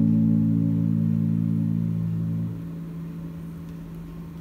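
The last chord of a nylon-string guitar rings out and fades slowly, ending the piece. About two and a half seconds in, most of the notes stop suddenly, as if damped, and a single note lingers faintly.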